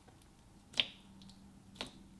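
Fingers pressing into glossy pink slime, making two sharp clicking pops, the louder one about a second in and a softer one near the end.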